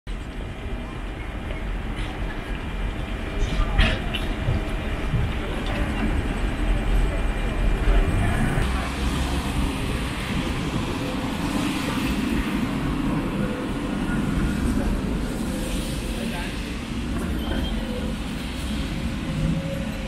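Street sound of a vintage tram running past on its rails, with low rumble, a few sharp clicks and traffic on a wet road, along with people's voices.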